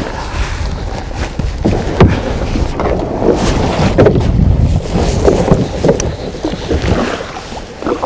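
A kayak being boarded and launched from a gravel shore: knocks and scrapes from the hull, water splashing, then paddle strokes. Wind buffets the microphone throughout.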